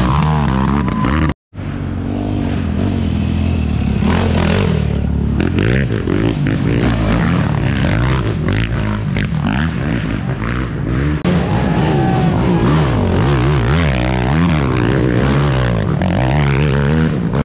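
Racing ATV engines revving up and down hard as quads power along a dirt woods trail, in several cut-together passes, with a brief dropout about a second and a half in.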